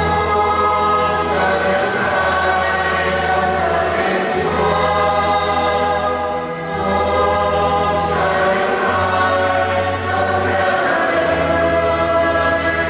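A church choir singing the sung response of the wedding psalm in slow, held chords over a sustained low accompaniment, with short breaths between phrases.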